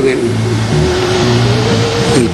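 A steady rushing noise with a low hum beneath it.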